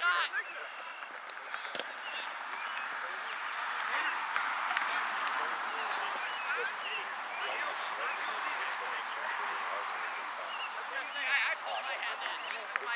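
Many overlapping voices calling and chattering across an open soccer field, with no single voice standing out, swelling after the first couple of seconds. There is a single sharp knock about two seconds in, and a nearer voice briefly near the end.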